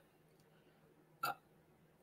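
Near silence, broken once, about a second in, by a single brief vocal sound from the man, like a hiccup or small throat sound.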